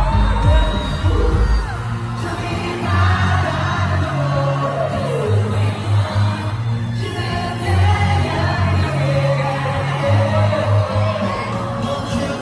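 Live K-pop song played over an arena sound system: a deep, pulsing bass line, heaviest in the first two seconds, under sung vocals.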